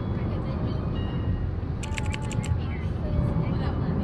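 Car cabin road noise at highway speed, a steady low rumble with muffled passenger voices under it and a quick run of clicks about two seconds in; it cuts off suddenly at the end.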